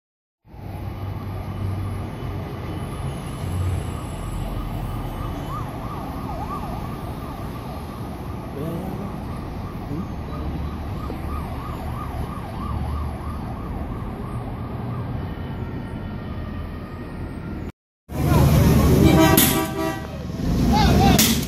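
Distant emergency siren wailing up and down over a steady rumble of city noise. Near the end the sound breaks off briefly, and louder, closer sound follows.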